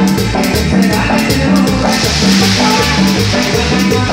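Live band playing upbeat Latin dance music, with a steady repeating bass line and drum-kit rhythm. A cymbal wash rings out about halfway through.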